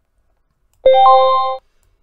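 MetaTrader 4 alert sound: a short, loud electronic chime of a few steady tones, with a higher tone joining just after it starts, that cuts off after about three-quarters of a second. It signals that a script's alert has fired.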